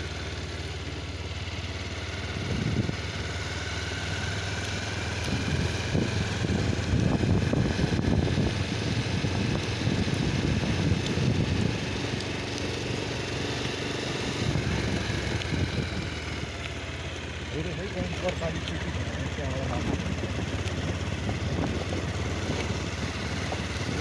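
Motorcycle engine running at road speed, a steady low hum under road and wind noise heard from the pillion seat, rougher and louder for a stretch in the middle.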